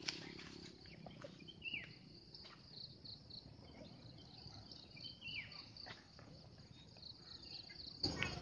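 Faint, steady high-pitched insect trilling in a forest, with a short falling bird call twice, about two and five seconds in.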